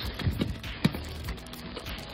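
Plastic-bagged toys being handled and shifted, with scattered clicks and knocks, one sharper knock a little under a second in. Faint background music runs underneath.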